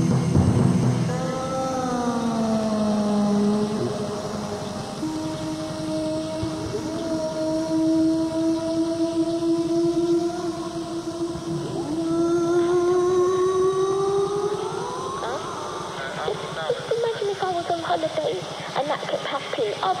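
Abstract ambient electronic music: a stack of drawn-out synthesized tones that glide slowly downward, hold, then sweep upward about twelve to fifteen seconds in, followed by a dense tangle of short warbling tones near the end.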